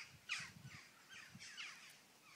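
Birds calling outdoors: a rapid series of short calls, each falling in pitch, several a second, the loudest about a third of a second in.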